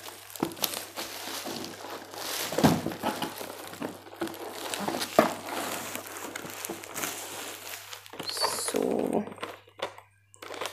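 Plastic bubble wrap crinkling and rustling as it is unwrapped by hand, together with a sheet of paper rustling, in irregular crackles and small ticks.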